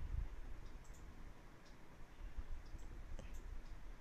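Faint, scattered light clicks of a steel spatula scraping a fried tempering of roasted chana dal, coconut and curry leaves out of a pan onto flattened rice in a metal kadhai.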